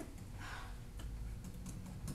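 Stylus clicking and tapping on an electronic writing surface while words are handwritten: a scatter of light, irregular clicks over a low room rumble.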